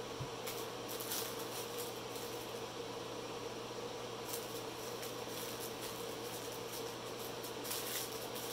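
Small plastic bags of diamond-painting drills crinkling and rustling off and on as they are spread out by hand, over a steady low hum.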